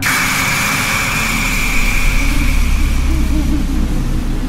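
A loud jump-scare sound effect cuts in abruptly as the ghost appears: a shrill, steady high tone over a noisy wash and a deep rumble, with the high tone fading out after about three and a half seconds.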